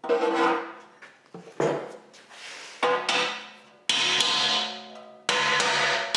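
A hammer striking the steel cutting-edge plate set in the excavator bucket's notch, about five blows at irregular intervals, each leaving a ringing metallic tone that dies away.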